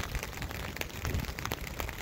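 Rain and wind on the phone's microphone: a steady noisy hiss with uneven buffeting at the low end and scattered short ticks like falling drops.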